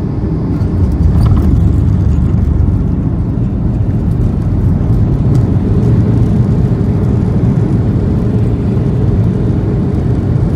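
Cabin noise of a Boeing 737-800 touching down and rolling out: about a second in the level steps up into a heavy, steady low rumble of the engines and the wheels on the runway as the ground spoilers deploy.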